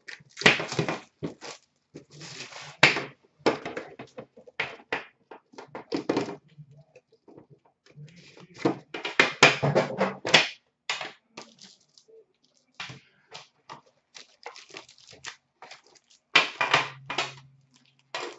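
Hands handling trading card packs and a card tin: an irregular run of crinkles, taps and light knocks, some in quick clusters.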